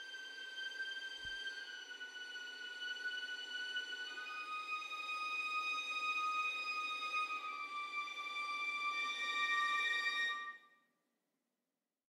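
Sampled violin section (Audio Imperia AREIA, 14 violins) playing string harmonics: thin, high sustained notes moving slowly downward, with a second higher voice joining about four seconds in, over a faint airy bow sizzle. The notes cut off near the end.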